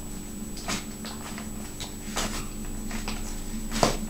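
A metal spoon stirring mayonnaise-dressed salad in a plastic bowl: soft scraping and squelching, with a few sharp clicks of the spoon against the bowl, the loudest near the end.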